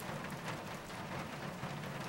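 Faint, steady hiss of rain, a storm background running under the scene.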